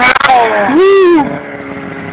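Snowmobile engine revving: a brief clatter, a falling pitch, then a quick rev up and back down about a second in, before it settles into a steady run.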